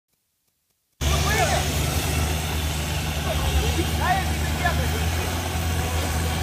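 Mitsubishi Pajero SUV's engine running steadily with a low hum as it wades through deep river water, starting about a second in. Short shouts from onlookers rise over it twice.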